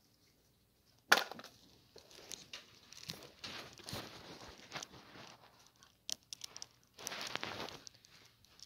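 Rustling and crinkling of plastic eggs and shiny plastic Easter grass being handled in a basket, coming in irregular spells with a louder burst near the end. A sharp click comes about a second in.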